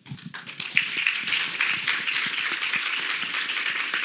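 Audience applauding. The clapping starts a moment in and swells to a steady level within about a second.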